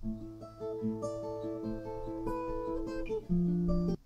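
Crafter acoustic guitar played fingerstyle: single plucked notes ring over held bass notes, and a louder low note comes in near the end.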